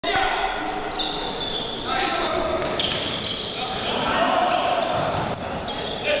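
Basketball game sounds in a large gym: sneakers squeaking on the court and a ball bouncing, with players' and spectators' voices.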